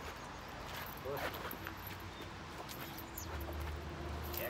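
Faint scuffling of a shepherd-type dog's paws and shoes on brick paving as the dog grips and tugs at a padded bite suit, with a short vocal sound about a second in.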